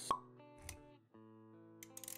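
Intro jingle: a sharp pop sound effect right at the start, then music with held notes, a short low thud partway through, and a brief break before the music carries on.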